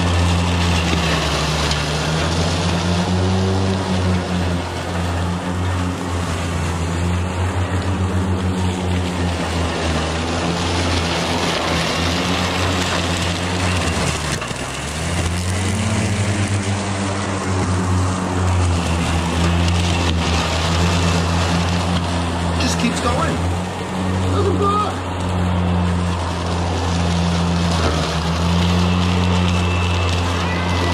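Ego Z6 battery-powered zero-turn mower's electric motors humming steadily while its blades cut thick, tall wet grass and cattails. About halfway through the pitch sags under load and climbs back, and the motors don't bog.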